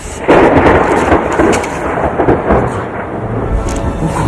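A thunderclap breaking in suddenly a fraction of a second in, then rumbling thunder over steady heavy rain.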